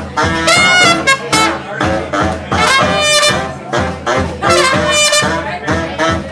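A brass funk band playing live: bright trumpet and saxophone stabs recur about every two seconds over a steady drum-kit beat, with sousaphone and bass guitar underneath.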